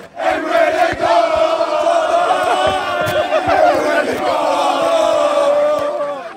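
Crowd of football fans chanting in unison, many male voices singing a loud chant on long held notes.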